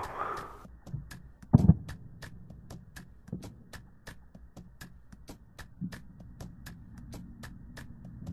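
A steady fast ticking, about four ticks a second, with one loud knock about one and a half seconds in and a few fainter knocks later.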